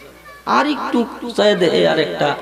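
Only speech: a man preaching through a microphone, starting about half a second in after a brief pause. His voice rises and falls in a drawn-out, sing-song delivery.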